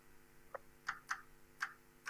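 Chalk writing on a blackboard: about four short, sharp ticks of the chalk striking and dragging across the board.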